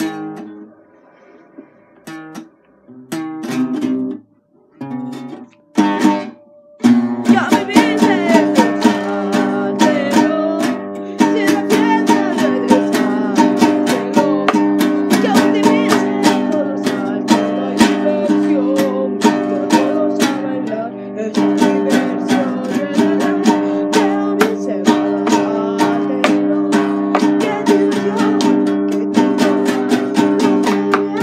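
Guitar played live: a few separate strums and plucks in the first seconds, then steady rhythmic chord strumming from about seven seconds in, a little louder from about eleven seconds.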